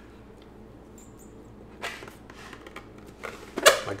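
A person blowing up a rubber party balloon by mouth: a stretch of quiet, then short rushes of breath about two seconds in and a louder one near the end.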